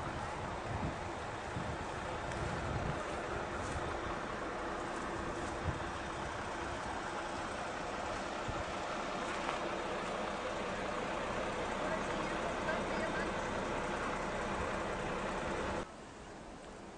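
Children's voices calling and shouting at a distance, blended into a steady hum, with a few brief clicks.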